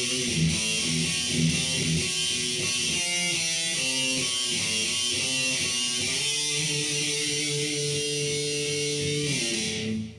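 Electric guitar playing a riff: a quick run of repeated low notes, then a line of changing single notes, ending on a chord held for about three seconds that stops just before the end.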